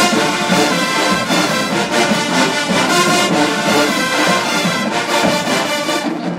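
College marching band playing, its brass section carrying loud, sustained chords without a break.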